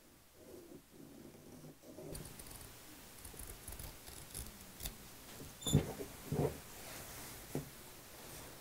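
Faint rustling of fabric and a plastic clock cover being handled, then a few sharp clicks in the second half as scissors begin cutting into the fabric.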